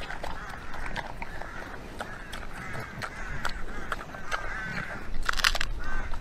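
Pot-bellied pig chewing and smacking as it eats from a pan, with many short clicking bites and a denser run of bites about five seconds in.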